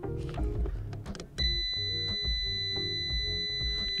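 A digital multimeter's continuity beeper sounds one steady high beep from about a third of the way in, as its probes bridge a fuse: the fuse has continuity and is good. Background music plays under it.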